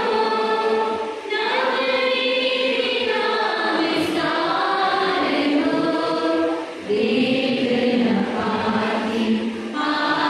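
A church choir singing a hymn in long, held phrases, with short breaths between phrases about a second in and near seven seconds.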